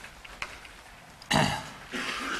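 A man clearing his throat once, a short rough burst about a second and a half in, after a few faint chalk taps on a blackboard.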